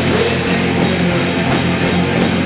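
Punk rock band playing live: electric guitars and a drum kit, loud and continuous.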